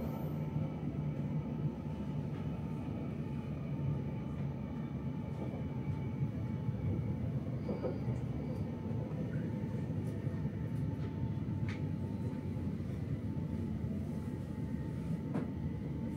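Passenger train running on its rails, heard from inside the carriage as a steady low rumble with a faint steady hum and a few faint clicks.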